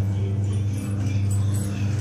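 Washing machine motor giving a loud, steady low electrical hum.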